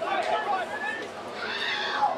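Shouting voices of players and people at the ground, with one voice rising high and loud about one and a half seconds in.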